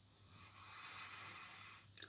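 Near silence with a faint, soft breath in lasting about a second, starting about half a second in, as a person smells perfume sprayed on her skin.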